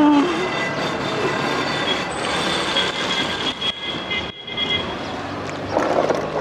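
A vehicle passing on the road close by: a steady rush of road noise with a high thin squeal in the middle of it that lasts about three seconds.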